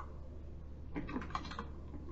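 Typing on a computer keyboard: a few keystrokes at the start, then a quick run of clicks about a second in.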